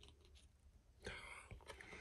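Near silence: room tone, with a faint breathy sound about a second in and a soft tap shortly after.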